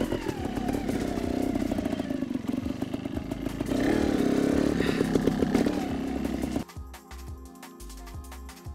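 Trials motorcycle engine running at low revs while being ridden, the revs rising briefly about halfway through. Near the end it cuts off suddenly and gives way to quieter music with a beat.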